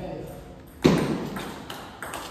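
A table tennis rally in a large hall: one loud, sharp knock a little under a second in, echoing in the hall, and a fainter ball click later on.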